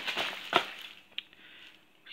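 Black plastic bin bag rustling and crinkling as hands rummage in it, with a sharp click about half a second in, fading away near the end.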